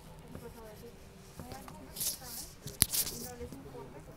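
Low chatter of passengers inside an airliner cabin during boarding, with a single sharp click a little under three seconds in and a couple of short hissy rustles around it.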